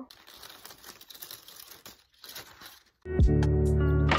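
Faint rustling and crinkling of clear cellophane wrap being handled, then background music with a steady beat cuts in abruptly about three seconds in and is the loudest sound.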